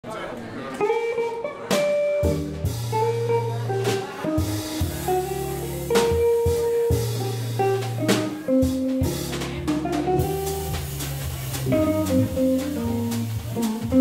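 Live jazz trio playing: a Viscount organ holding long bass notes with chords above, a hollow-body electric guitar playing the melody, and a drum kit keeping time with light cymbal and drum hits. The low bass notes come in about two seconds in.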